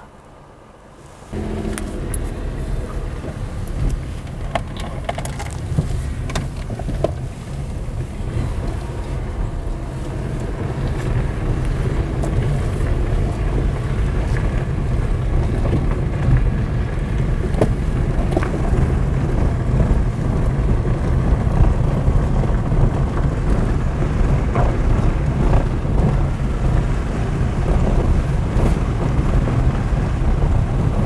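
Wind buffeting the microphone, a steady low rumble that starts about a second in and slowly grows louder, with a few faint knocks.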